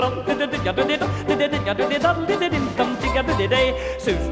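Swedish polka song: a steady oom-pah bass on the beat under a fast, bouncy tune with yodel-like nonsense-syllable singing.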